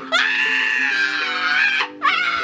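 A young woman's long, high-pitched squeal, held at a nearly level pitch for almost two seconds, over background music with steady sustained notes.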